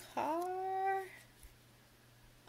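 A woman's drawn-out wordless exclamation of delight, about a second long, her voice rising in pitch and then held.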